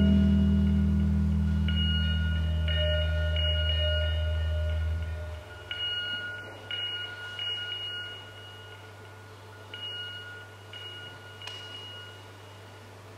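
Ambient electric guitar and electronics dying away: a low sustained drone fades and stops about five seconds in, leaving sparse, reverberant bell-like high notes that ring at irregular intervals and grow quieter.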